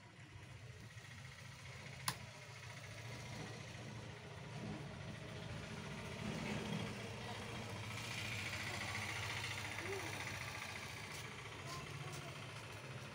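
Screwdriver working the screws of a wood router's plastic motor housing, with one sharp click about two seconds in, over a steady low hum.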